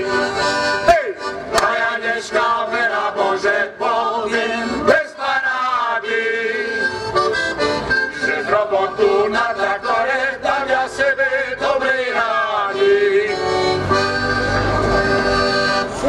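Accordion playing a Slovak folk tune as an instrumental interlude between sung verses, held chords under a moving melody line.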